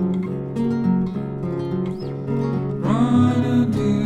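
Music: plucked acoustic guitar playing an instrumental passage of a folk song, with no vocals.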